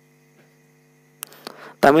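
A faint, steady low electrical hum in the recording, made of several even tones. About a second in it gives way to a small click, and a man's voice starts speaking near the end.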